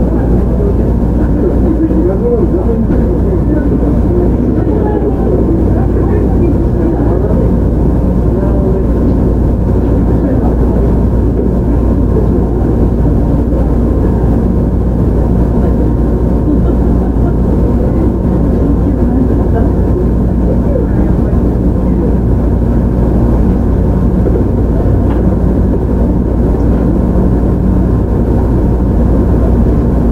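On-board running sound of a JR Shikoku 7000 series electric train, car 7007, an unrenovated unit with Hitachi GTO-VVVF control: a steady, loud rumble of wheels and running gear on the rails.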